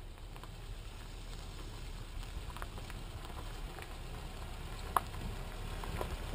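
Small pickup truck driving slowly up a dirt road and approaching: a low engine and tyre rumble growing steadily louder as it nears, with scattered small ticks and one sharp click near the end.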